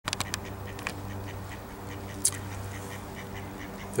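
Bird calls: a quick run of short calls right at the start, then scattered fainter calls and one high chirp a little after two seconds, over a steady low hum.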